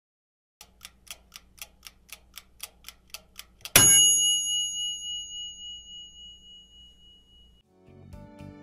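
Quiz-timer sound effect: a clock ticking about four times a second for about three seconds, then a single bright bell ding, the loudest sound, that rings out and fades slowly, signalling that time is up.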